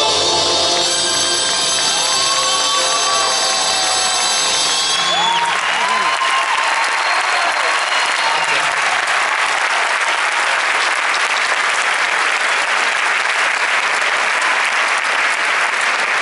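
A Cuban dance orchestra's final chord is held and cuts off about five seconds in, giving way to loud, steady audience applause, with a few voices calling out over it early in the clapping.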